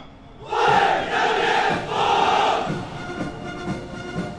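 A formation of soldiers shouting a drilled reply in unison, the massed answer "为人民服务" (Serve the people!) to the reviewing leader's greeting "Comrades, you have worked hard." The loud shout starts about half a second in, comes in three pushes over about two seconds and dies away into echo.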